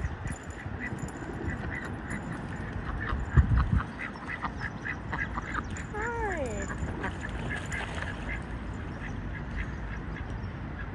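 Domestic ducks calling with a run of short, quick quacks, and one longer quack falling in pitch about six seconds in, over a steady low rumble of wind on the microphone, with a single dull thump about three and a half seconds in.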